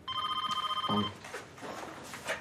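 Office telephone ringing: one electronic warbling ring lasting about a second, then softer scattered noises.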